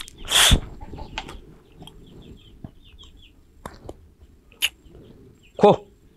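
A brief loud rustling swish about half a second in, then soft chicken clucks and chirps in the background, with a short call just before the end.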